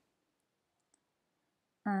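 Near silence with a couple of faint clicks, then a woman's voice starting just before the end.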